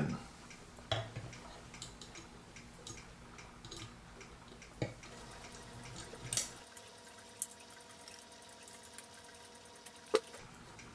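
Faint clicks and taps of small metal parts being handled: a brass anniversary-clock movement fitted onto its base pillars and its fixing screws put in, with a few sharper knocks about five seconds in and near seven and a half seconds.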